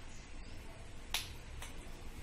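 A spoon clicking against a stainless steel mixing bowl: one sharp click about a second in, then a fainter one half a second later.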